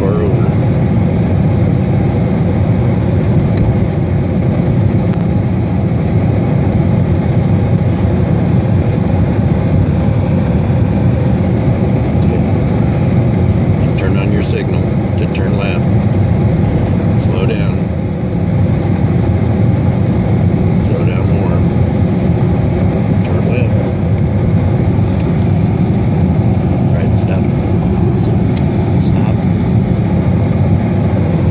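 Steady low rumble of a Jeep's engine and tyre noise, heard from inside the cabin while it drives along the road.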